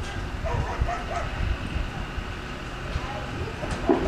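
Steady low rumble of open-air ambience with faint, brief voices of the people gathered around the roping box.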